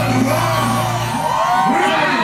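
Live reggae concert music: a singer's voice over amplified band backing, with whoops. The bass line drops out about halfway through, leaving the voices.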